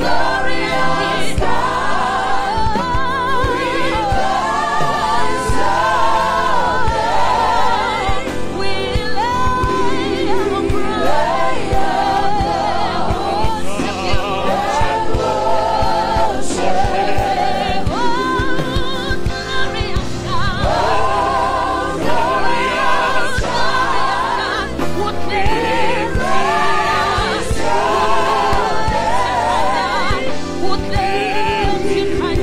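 Live gospel praise song: several voices singing together on microphones, with vibrato, over a band accompaniment.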